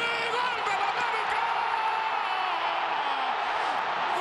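A television commentator's long, drawn-out shout of "gol" held for about three seconds, over a stadium crowd cheering the goal.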